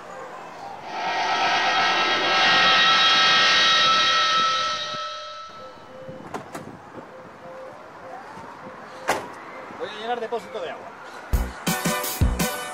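A motorhome's engine drives up close and stops, loudest a few seconds in and then dying away, followed about nine seconds in by a single door slam; upbeat music starts near the end.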